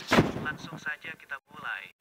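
A single loud boom right at the start, the loudest thing here, followed by a voice speaking: a dramatic impact sound effect and dialogue from an animated video's soundtrack.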